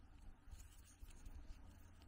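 Near silence: faint handling of a wooden interlocking ball puzzle, with a few soft small taps as fingers grip and turn the wooden pieces over a low room hum.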